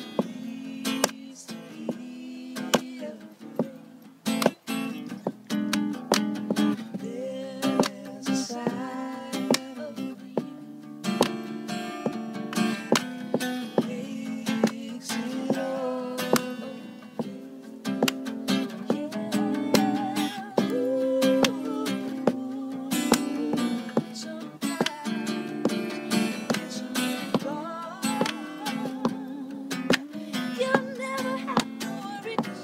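Acoustic guitar strummed in a steady rhythm, with hand percussion, claps and taps, keeping the beat over it.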